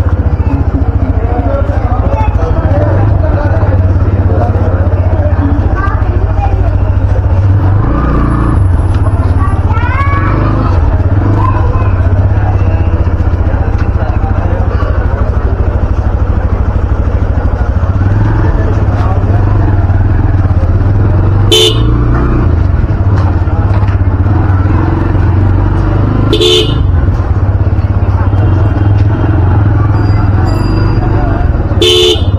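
Motorcycle running slowly in low gear, a steady low engine and wind rumble on the camera microphone, with people talking around it. Two short vehicle horn toots sound in the second half.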